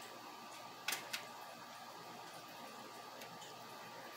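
Faint, soft handling of a roasted red pepper as the seeds are pulled out of it by hand; mostly quiet, with two short faint clicks about a second in.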